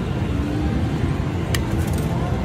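Casino floor background: a steady low rumble with a faint held hum. About a second and a half in there is one sharp click, followed by a few light high ticks.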